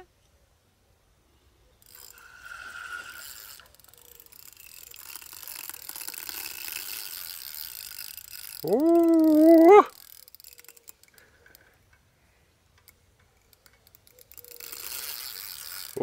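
Carp spinning reel at work while a hooked fish is played: the reel's gears and ratchet clicking run in stretches, a short one near the start and a longer one through the middle, returning near the end. About nine seconds in a person gives a short rising hum.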